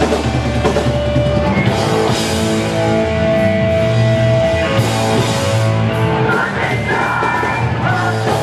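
Hardcore punk band playing live at full volume: distorted electric guitars, bass and drum kit, with vocals coming in about six seconds in.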